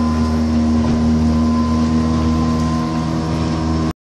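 A home-made houseboat's outboard motor running steadily with an even, unchanging hum, heard from inside the cabin. The sound cuts off abruptly just before the end.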